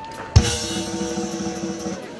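Drum kit struck once, hard, about a third of a second in: a bass drum hit together with a crashed cymbal. The cymbal and drums ring on after it, and the ring cuts off shortly before the end.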